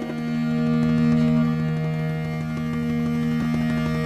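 Music opening with a held two-note drone of a bowed string instrument, rich in overtones, swelling slightly about a second in and sustained through.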